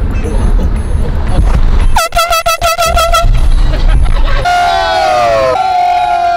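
Handheld canned air horn blown inside a car: a quick run of short toots, about five a second, then two long blasts whose pitch sags slightly. A low car-cabin rumble runs underneath before the toots.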